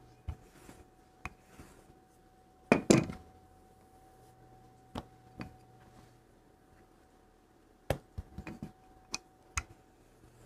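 Scattered light knocks and clicks of a wooden rolling pin being handled on a wooden board and worktable while a clay slab is rolled out and smoothed by hand, with one louder knock about three seconds in and a small cluster near the end.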